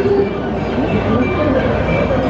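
Amusement park ambience: many people talking at once, music playing and a continuous low rumble of ride machinery.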